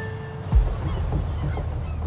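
Background music fades out. About half a second in, a thump is followed by the steady low rumble of a car ferry under way at sea.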